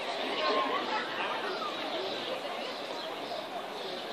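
Indistinct chatter of several people talking in the background, with no words clear.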